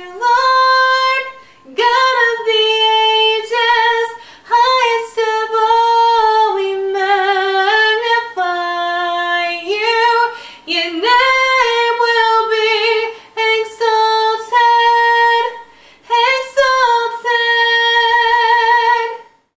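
A woman singing solo a cappella: long held notes with vibrato, in phrases separated by short breaths, with no accompaniment.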